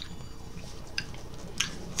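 A few soft mouth clicks over a steady background hum.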